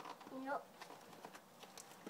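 Faint clicks and scratches of hands working at a duct-taped cardboard parcel to open it, a few small ticks spread through the second.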